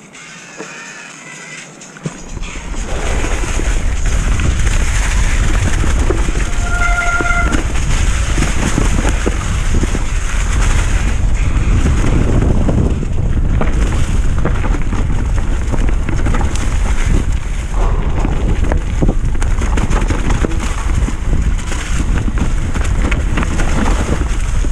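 Downhill mountain bike riding noise: wind buffeting the camera's microphone over the rumble and rattle of knobby tyres rolling fast over dirt and dry leaves, starting about two seconds in as the bike picks up speed. A brief high squeal cuts through about seven seconds in.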